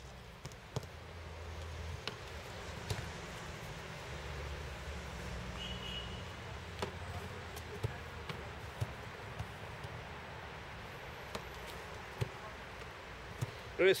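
Footballs being struck and landing during goalkeeper drills: about a dozen short, irregular knocks over a steady background rumble.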